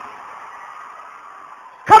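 A pause in a man's speech with only faint, steady background noise, then his voice starts again sharply near the end.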